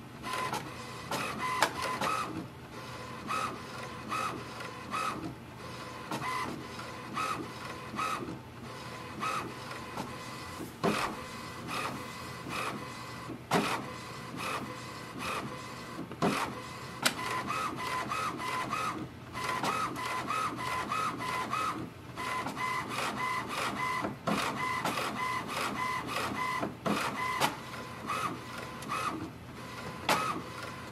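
HP Envy 6155e inkjet printer printing its ink-cartridge alignment page: the print carriage makes short whirring passes back and forth again and again, with scattered sharp clicks as the paper is stepped through.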